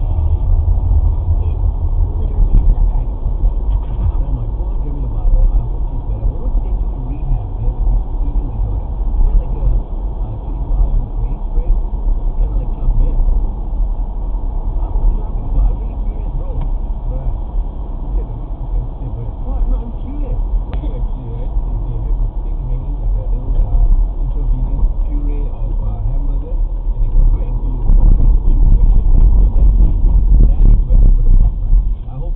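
Car cabin noise picked up by a dashcam's built-in microphone while driving at about 60–80 km/h: a steady low rumble of engine and tyres on the road, with muffled voices from the car radio underneath.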